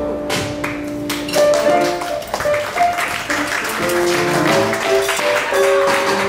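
Live small-band Latin jazz: piano and guitar play a run of short melodic notes over sharp percussive taps, after a held chord fades in the first second or so.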